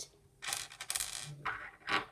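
Small rocks clinking and scraping as they are handled on a table: a clatter of little clicks starting about half a second in and lasting under a second, then a shorter noise near the end.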